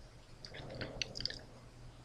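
Faint, scattered short clicks and ticks, bunched together for about a second, over a low steady hum.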